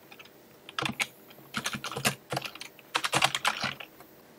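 Computer keyboard typing: a string of quick key clicks in short runs, starting about a second in and stopping just before the end.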